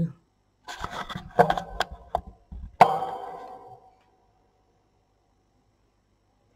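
Handling noise at a metal knitting machine: a quick run of clicks and knocks, the loudest about three seconds in with a brief metallic ring.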